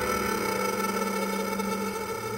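Sustained electronic drone of several steady, layered tones, easing down slowly, from a live electronic set built on real-time processed saxophone sound; the saxophone is not being blown.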